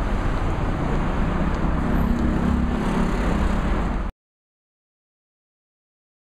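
Street traffic noise: a steady low rumble with a passing vehicle's engine hum, cutting off suddenly about four seconds in.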